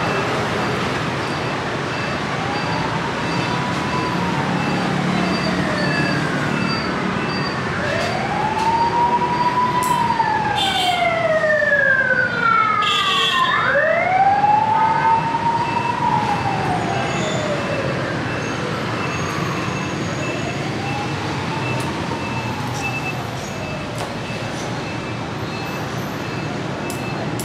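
An emergency siren wailing, its pitch rising and falling in slow sweeps several times, with overlapping falling glides near the middle, over steady street traffic noise.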